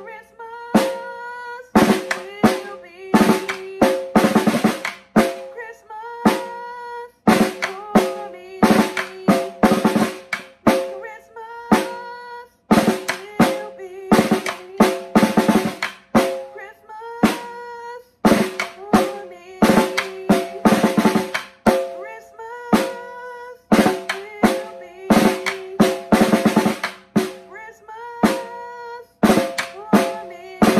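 Snare drum played with sticks in a repetitive rhythm, a phrase of fast strokes repeating about every two seconds, the drumhead ringing after the accents.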